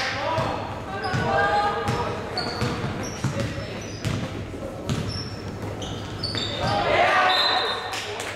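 Basketball game sounds in a reverberant gym: a basketball bouncing on the hardwood court as it is dribbled, sneakers squeaking in short high chirps, and players and spectators calling out.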